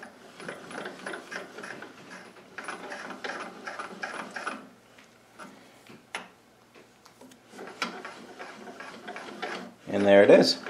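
South Bend 13-inch lathe's cross-slide crank handle and feed screw being turned by hand, a dense run of small metallic clicks and ticks for about four and a half seconds, then a few scattered clicks and another run near the end.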